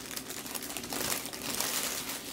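Large sheets of cut-and-spliced kite paper rustling and crinkling as a stack of them is lifted and leafed through by hand, a little louder in the second half.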